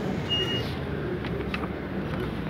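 Steady outdoor background noise of a street and a small crowd with indistinct voices, with a brief click about one and a half seconds in.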